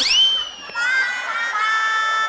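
Comic sound-effect sting: a quick sweep that shoots up in pitch and slides back down, then, about three-quarters of a second in, a steady held musical chord.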